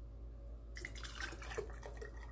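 Coconut-milk coquito poured from a ladle through a funnel into a glass mason jar: a liquid splashing and trickling that starts about a second in.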